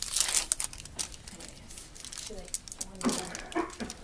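Paper wrapper and backing strips of an adhesive bandage crinkling and tearing as the bandage is peeled open, loudest in the first half second and again about three seconds in.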